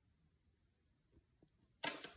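Near silence, then near the end a sudden rustle and tap as a hand lands on and slides over tarot cards spread on a table.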